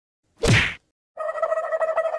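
A cartoon 'whack' sound effect, a single short hit about half a second in, followed just past the one-second mark by a steady held electronic tone that wavers slightly in loudness.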